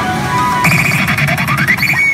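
PA Hana no Keiji Ren pachinko machine's music and effect sounds: about two-thirds of a second in, a sudden loud electronic burst with a sweep rising in pitch, running into a held high tone as the screen flashes red.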